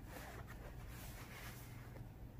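Quiet room with a low steady hum, and a faint rustle of a stuffed denim pin cushion being turned over by hand, which fades out about a second and a half in.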